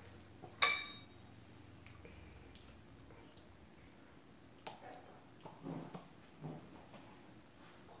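A sharp metallic clink that rings briefly, with a few faint ticks after it: the metal measuring cup knocking against the syrup bottle. Later come a few soft, low sounds of a dog playing with its toy.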